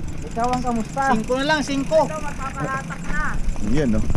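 A person's voice, talking or calling out, over a steady low rumble of wind and road noise from riding.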